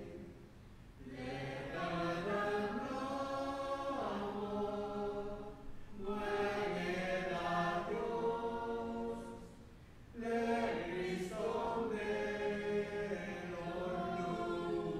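A congregation singing a hymn in Palauan, in long held phrases, with brief pauses between lines about a second in and again about ten seconds in.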